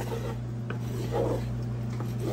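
Wooden spatula scraping and rubbing against the bottom of a cast-iron pot while stirring flour and oil into a roux, over a steady low hum.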